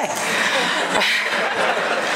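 An audience laughing together in a large room, a dense wash of laughter at about the level of the speech around it.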